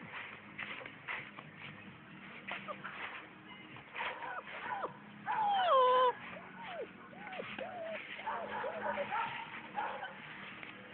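Great Dane puppy whimpering and yelping in a series of short falling cries, the longest and loudest one about five to six seconds in.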